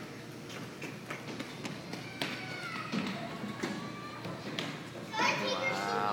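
Children's voices and play noise in a large indoor play area, with scattered light knocks; a closer, louder voice comes in near the end.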